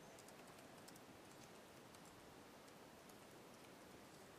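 Faint typing on a computer keyboard: a run of light, irregular key clicks over steady room hiss.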